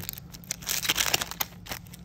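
Ultimate Masters booster pack's foil wrapper being slit open with a blade and crinkled, a dense crackling loudest from about half a second to a second and a half in.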